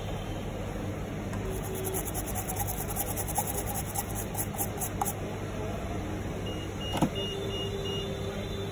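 Short-bristled brush scrubbing a phone logic board, a run of rapid scratchy strokes, over a steady low workbench hum, with a single click near the end.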